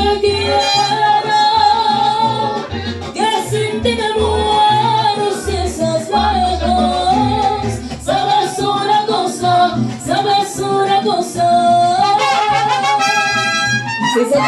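Mariachi band playing an instrumental passage: trumpets carrying the melody over strummed guitars and a plucked guitarrón bass line, closing on a long held note near the end.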